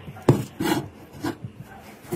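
A steel kitchen knife honed against a cleaver blade: about three short rasping strokes of steel on steel.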